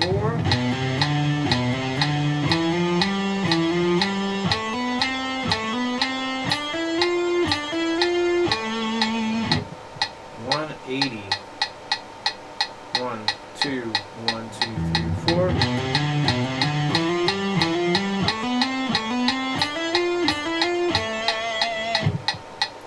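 Electric guitar playing a hammer-on exercise, single notes rising and repeating in small groups, over a steady metronome click. The playing breaks off briefly about ten seconds in and then starts again.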